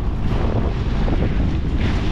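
Wind buffeting the microphone on a moving jet ski, over the jet ski's running engine and water rushing and splashing against the hull on choppy water; a steady, loud rumble.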